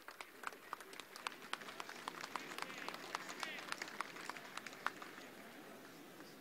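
Scattered applause from a crowd, individual claps thinning out near the end.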